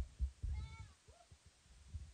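A faint, short animal call with an arching pitch, over a few soft low bumps.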